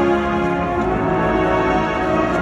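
Marching band playing live, its brass holding sustained chords.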